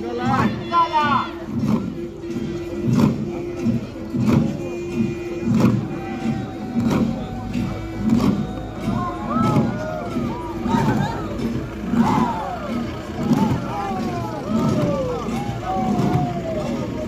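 Many Garo long drums (dama) beaten together in a steady rhythm, about two beats a second, over a held tone. From about halfway through, voices call out over the drumming with rising and falling cries.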